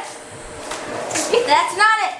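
A child's high-pitched voice calling out near the end, after a quieter stretch of shuffling noise.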